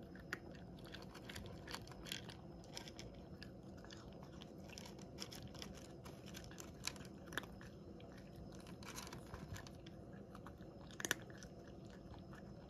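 A cat chewing dry kibble: faint, irregular crunches and clicks, with one sharper, louder crunch shortly before the end.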